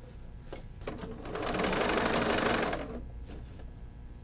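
Sewing machine top stitching the binding on a quilted panel: a burst of fast stitching starts about a second in and runs for about two seconds, with a low hum and a few separate light ticks around it.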